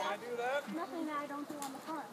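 Speech only: nearby people talking, with high-pitched voices, like children's, among them.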